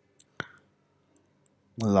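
Two quick computer mouse clicks a fraction of a second in, the second one louder, then a voice starts speaking near the end.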